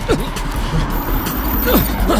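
Men grunting in a scuffle, two short falling grunts, one at the start and one near the end. Under them run background music and a steady low rumble.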